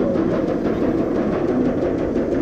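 Dramatic themed ride music with drums and wavering sung or chanted tones, playing from the coaster's speakers over the steady low rumble of the train climbing the lift hill.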